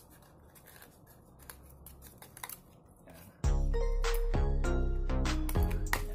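Small scissors giving a few faint snips as they cut through a thin, lightweight plastic body shell. About three and a half seconds in, loud background music with a bass line and melody starts and drowns them out.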